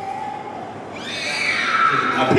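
A human voice held on one tone, then from about halfway through a louder, high-pitched, wavering cry.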